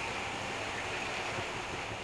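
Bread toasting in butter in a nonstick frying pan, a steady soft sizzle.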